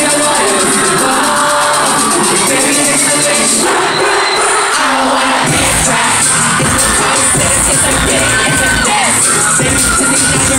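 Loud pop song from a concert sound system with a crowd cheering over it; a heavy bass beat comes in about halfway through.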